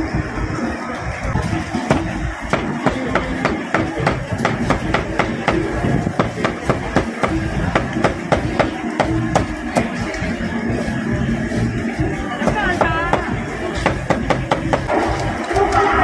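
Cleaver chopping jar-roasted pork on a wooden chopping block: a steady run of sharp chops, about three a second, that starts about two seconds in and stops about twelve seconds in, over background music and crowd chatter.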